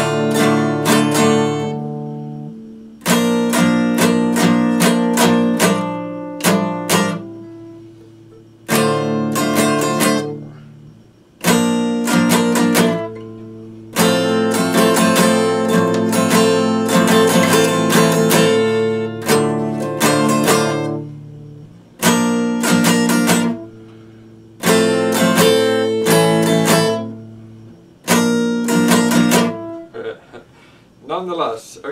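Epiphone acoustic guitar played as an instrumental: short phrases of quick strummed chords, each chord left to ring and fade before the next phrase begins, with no singing.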